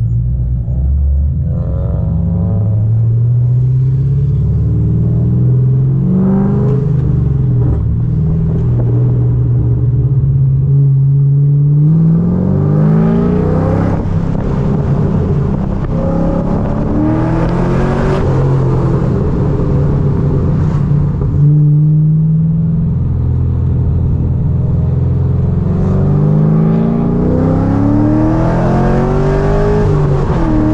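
C6 Corvette V8 with a custom full 3-inch exhaust, heard from the open cabin. It pulls hard up through the revs several times, the pitch climbing and then dropping back at each gear change.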